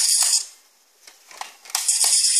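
Music playing through the tiny speaker built into a 1/64 diecast Nissan Skyline R34, thin and tinny with almost no bass. It drops out about half a second in, with a couple of faint clicks in the gap, and comes back near the end.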